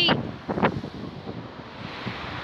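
Wind blowing across the microphone: a steady rushing noise.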